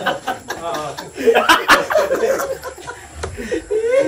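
A man laughing and chuckling, mixed with casual talk.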